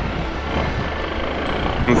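Motorcycle engine running steadily at low speed in city traffic, with road and wind noise.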